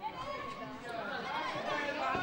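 Several overlapping voices calling out and chattering across a soccer pitch during live play, with no single clear word.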